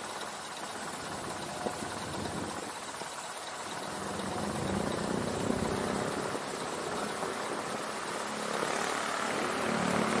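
Idling vehicle engines and city traffic noise while the car waits in stopped traffic; a low engine hum grows louder from about four seconds in.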